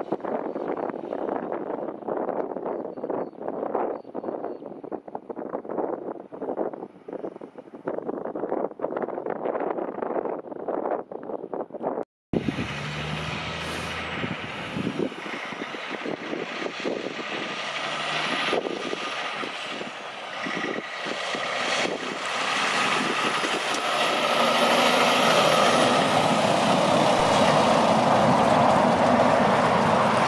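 Road train engine and tyre noise. A distant truck is heard through gusty wind on the microphone. After a cut, a road train hauling two empty flat-top trailers approaches and grows steadily louder as it passes close by near the end.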